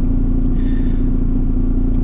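Steady low rumble and hum of a running car, heard from inside the cabin.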